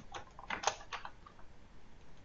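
Computer keyboard being typed on: a quick run of key clicks, most of them in the first second, then a few fainter taps.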